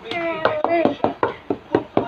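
Rapid, fairly even clicking or tapping, about five clicks a second, with a child's brief high-pitched vocalising in the first second.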